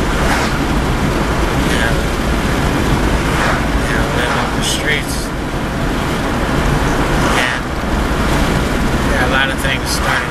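Steady road and engine rumble inside a moving car's cabin, with a voice talking on and off over it.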